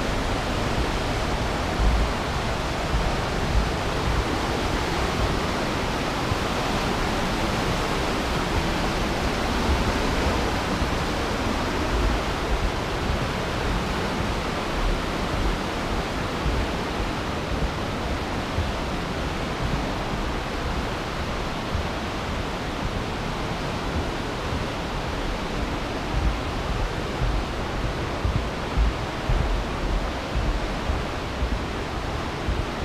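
The glacial Aare river rushing through a narrow limestone gorge: a steady, unbroken noise of fast water, with occasional low thumps.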